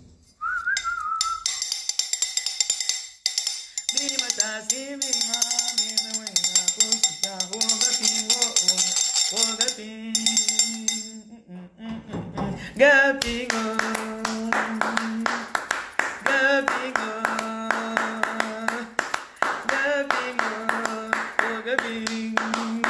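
A woman singing a song to a fast tapped rhythm, beaten by hand on a makeshift object standing in for castanets. Both stop briefly about eleven seconds in, then start again.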